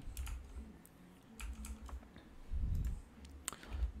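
Faint scattered clicks and a few low thumps, picked up raw by a condenser microphone a few inches away.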